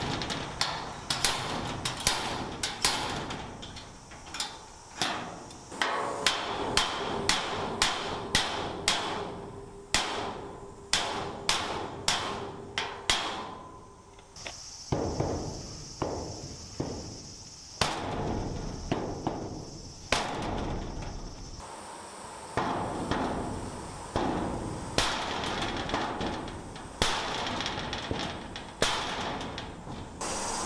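Repeated sharp metal knocks, irregular at about one to two a second, as a slide hammer pulls a bent steel garage pillar straight. About halfway through, a hammer strikes a wooden block held against the garage's sheet-steel wall, knocking the bend back out.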